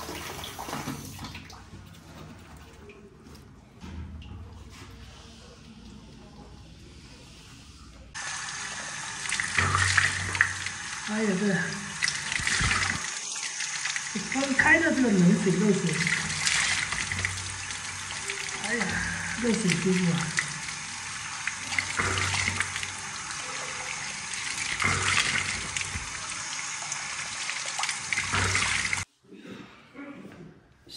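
Teeth being brushed, then about eight seconds in a tap opens and runs hard onto hands over a plastic basin, a steady splashing hiss while hands and face are washed. The running water breaks off suddenly near the end.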